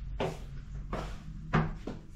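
Fusuma sliding door being slid along its wooden track: four short scraping rubs, the loudest about one and a half seconds in.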